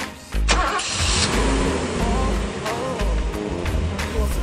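A car engine starting up about half a second in, after its breakdown has been seen to under the bonnet, with background music and a steady beat running underneath.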